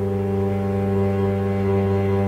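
Clarinet, cello and piano trio holding a long, steady low chord, with a bowed cello note sustained at the bottom.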